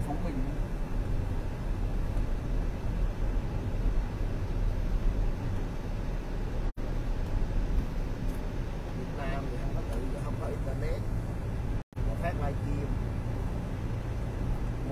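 Steady road and engine noise inside a moving car's cabin. Faint voices come in near the end, and the sound cuts out briefly twice.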